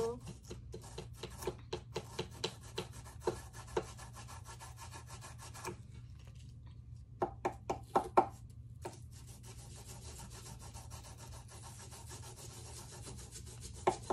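Knife and small digging tools scraping and picking at crumbly plaster dig-kit bars in quick, scratchy strokes. There is a short lull about six seconds in, then a run of louder scrapes about seven to nine seconds in.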